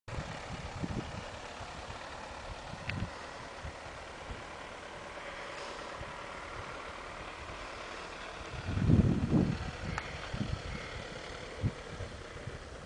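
Steady outdoor background noise with irregular low rumbles and thumps; the loudest comes about nine seconds in.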